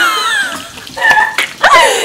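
A woman's high-pitched voice sliding down in laughing exclamations, with a short held note about a second in and more voice near the end.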